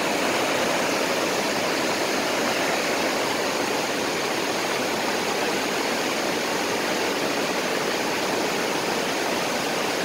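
Fast creek water rushing over rapids: a steady, unbroken rush that does not change.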